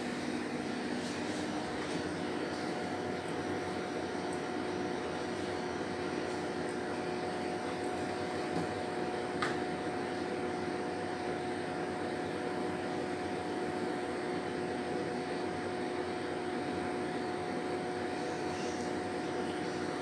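Steady hum of running equipment fans or room air conditioning, with two faint steady whine tones in it. One light click comes about nine and a half seconds in.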